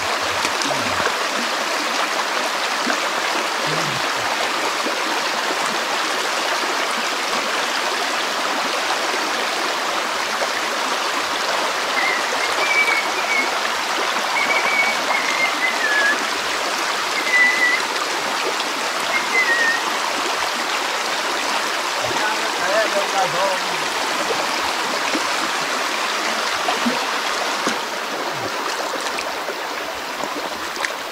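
A shallow rocky stream rushing and burbling over stones, a steady wash of running water, a little quieter near the end. A few faint high chirps come and go in the middle.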